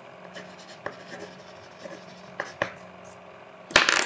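A few faint scattered clicks and taps, then a louder sharp click near the end, over a low steady hum.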